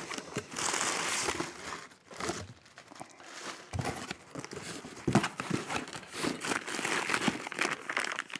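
Crumpled paper packing crinkling and rustling as a cardboard shipping box is opened and unpacked by hand. A longer rustle fills the first two seconds, followed by scattered short crinkles and light knocks of the cardboard.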